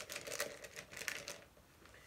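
Plastic bait packaging crinkling and rustling as a bag of soft plastic stick worms is handled, dying away about a second and a half in.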